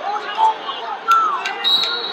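Wrestlers' shoes squeaking on the mat and a few sharp slaps from hand-fighting, the first about a second in and more near the end.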